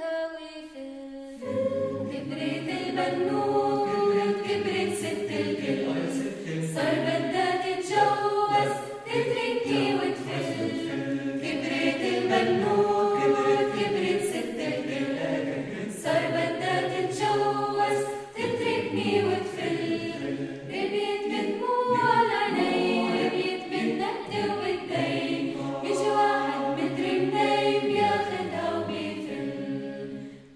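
Mixed choir of men's and women's voices singing a cappella in harmony. The voices break off briefly at the start and come back in after about a second and a half.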